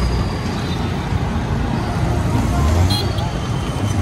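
Honda scooter riding through city traffic: a steady low rumble of engine and road noise with wind on the microphone, and traffic around it.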